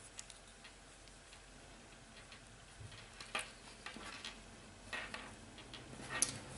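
Faint scattered clicks and light handling noise from hands adjusting crocheted panels against a plastic mesh sheet on a tabletop, with a faint low hum coming in about three seconds in.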